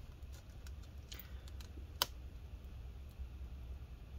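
Faint small clicks and taps of fingernails working at a stuck battery cable connector on the Dell Inspiron 13 5379's motherboard, with one sharper click about two seconds in.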